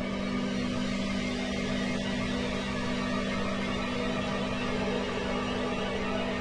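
Sustained electronic drone: low synthesizer tones held steady, with no rhythm or change.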